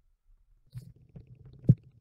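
Stylus writing on a tablet screen: faint low rubbing and scratching noise starting under a second in, with one sharp tap near the end.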